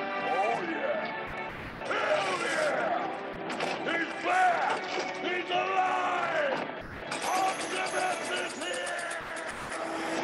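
Film soundtrack: music under a run of short warbling chirps that swoop up and down in pitch. A bright rattling hiss joins in over the last few seconds.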